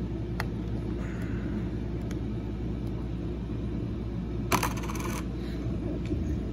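A presidential dollar coin dropped into a compartment of a plastic coin organizer, clinking briefly against the coins already there about four and a half seconds in, after a single light click near the start. A steady low hum runs underneath.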